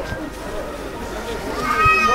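Chatter of a crowded pedestrian street, with a loud, high-pitched drawn-out cry near the end whose pitch rises slightly and falls.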